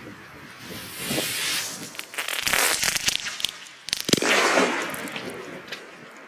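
Fireevent The King 2.0 firecracker (a D-Böller with a pre-burner): its fuse and pre-burner hiss and crackle for about three seconds, then it goes off with one sharp bang about four seconds in, trailing off after.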